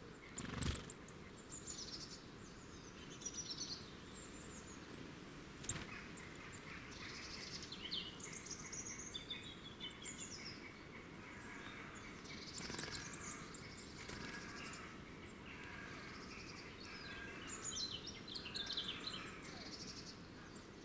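Woodland birds calling and singing in short chirps and trills, over faint background hiss. A few sharp taps break in, the loudest about half a second in and again near six seconds.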